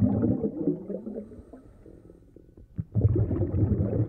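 A scuba diver's exhaled air bubbling out of the regulator underwater: a low gurgling burst of bubbles, a quiet gap of about a second and a half while the diver inhales, then a second burst starting about three seconds in.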